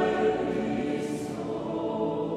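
Church choir singing, holding long sustained chords.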